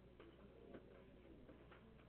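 Near silence: quiet classroom room tone with a few faint, scattered ticks.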